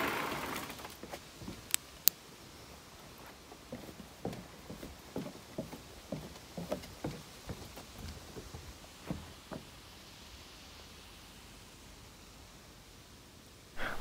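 Two sharp clicks about a quarter of a second apart, roughly two seconds in: the ThruNite TT20 flashlight's tail-cap switch turning the light on at turbo. After that come a few seconds of soft, irregular scuffs and rustles, and it is nearly quiet near the end.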